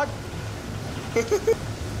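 Steady low rumble of a paddle steamer's engine room with its 1906 Marshall 16-nominal-horsepower steam engine and wood-fired boiler running. Three short vocal bursts, close together, a little over a second in.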